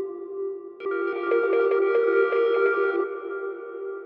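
Sustained ambient pad chords from a tonal sample played through FL Studio's stock sampler. A chord rings on, a fresh chord comes in about a second in and holds, then it thins out near the end.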